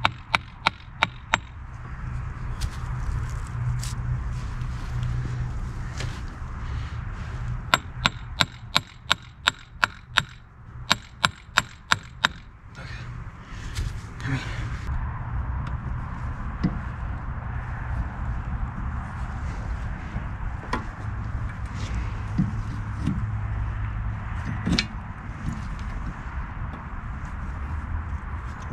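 Hammer striking the outer CV joint of a Chevrolet Spark's front axle in quick sharp blows, about three a second: a few in the opening second, then a run of about a dozen from roughly 8 to 12 seconds in. Afterwards only lighter knocks and handling of metal parts.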